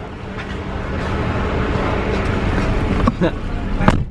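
A taxi's engine idling with a steady low hum under street traffic noise, and a sharp knock near the end as the car door shuts.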